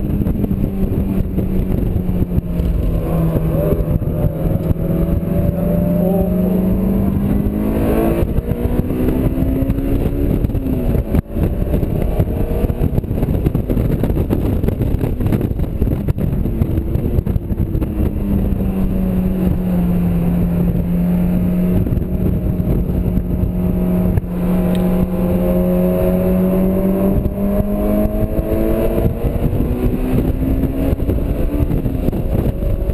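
Honda S2000 inline-four engine heard from inside the open-top cockpit at track pace, its note rising with the revs, climbing sharply and cutting off about ten seconds in, then pulling up steadily again through the last third. Wind and road noise rush through the open cabin throughout.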